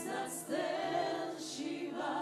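Church choir of mostly women's voices singing a worship song together, holding long notes, with a lead voice on a microphone; a new phrase begins about half a second in.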